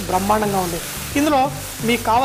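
Pasta and vegetables sizzling in a hot wok as they are stir-fried, with a man's voice speaking over it.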